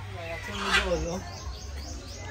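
A person's voice: one drawn-out utterance falling in pitch within the first second or so, over a steady low hum.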